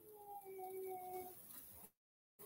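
A cat giving one long, faint meow that falls slightly in pitch and lasts about a second.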